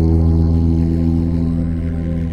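A man's deep voice holding one steady chanted tone, a low drone rich in overtones, used as sound-healing toning.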